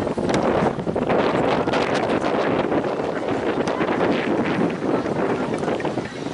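Wind buffeting the microphone: a steady, fluttering rushing noise.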